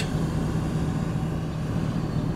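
Truck engine idling, a steady low hum heard from inside the cab.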